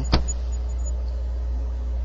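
A single sharp mouse click just after the start, over a steady low hum.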